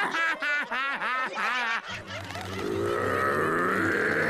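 A cartoon character's high, rhythmic cackling laugh for about two seconds. It gives way to a low rumbling drone with a sustained higher tone that swells toward the end.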